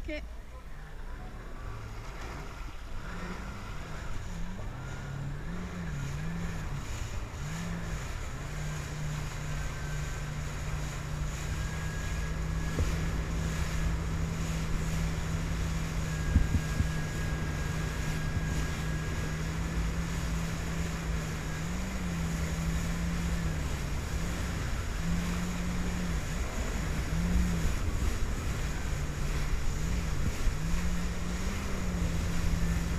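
Jet ski engine running under way, its drone wavering in pitch with the throttle, holding steady for about twelve seconds in the middle, then wavering again. Water spray rushes and wind buffets the microphone, growing slowly louder.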